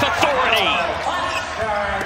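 Basketball game sound off the court: sneakers squeaking on the hardwood and a ball bouncing, with a man's voice over it.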